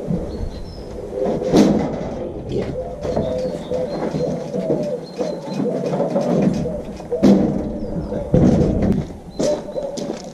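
Knocks and scraping as a large live-edge redwood slab is slid off a trailer bed and lifted. There is a loud knock a little over a second in and two more near the end, with birds calling in the background.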